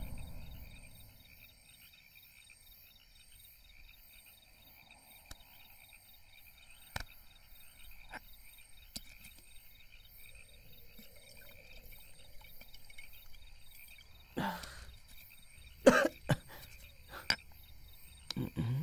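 Crickets chirping steadily in a steady, pulsing high trill, with a few soft clicks. Near the end a man coughs several times in short, sharp bursts after taking a drink.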